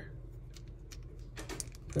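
A few light, scattered clicks and taps of small hard parts being handled: a resin 3D-printed filler piece and the plastic toy figure's leg knocking together as fingers line the piece up to fit it.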